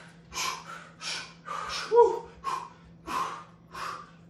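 Heavy breathing from exertion during plank-to-low-plank reps: about seven short, sharp breaths, roughly one every half second, with a louder gasp that catches in the voice about two seconds in.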